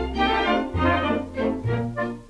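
Orchestral accompaniment to a vocal ballad in a gap between sung lines: sustained chords over a bass line that steps to a new note twice.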